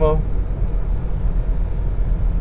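Steady road and engine rumble of a car driving at motorway speed, heard inside the cabin.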